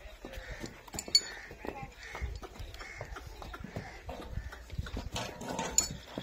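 Nili-Ravi water buffalo moving about on a dirt yard: hoof steps and scuffs, with a few sharp clicks, the loudest about a second in.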